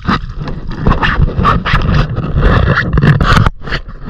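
Loud, rough scraping and rubbing close to a body-worn camera's microphone, with heavy low rumble and many short knocks, as a gloved hand gropes along the rim of a half-submerged rubber tire in muddy water. The noise drops out briefly near the end.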